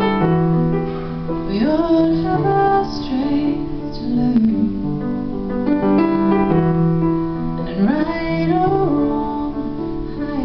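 A woman singing a slow song over her own accompaniment on a Cristofori grand piano: held piano chords under sung phrases that slide up into long notes with vibrato.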